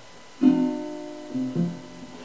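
Acoustic guitar strummed: a chord about half a second in, then two quicker strums around a second and a half in, left ringing and fading out.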